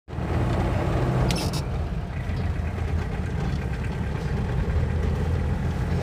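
Steady low rumble of a car's engine and tyres heard from inside the cabin while rolling slowly, with a brief hiss about a second and a half in.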